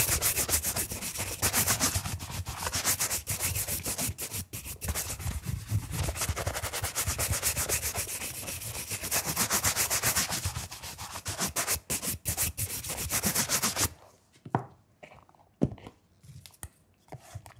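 Shoe brush stroked rapidly back and forth over a leather shoe, evening out freshly applied polish cream. The brisk bristle strokes stop about two seconds before the end, leaving a couple of faint handling taps.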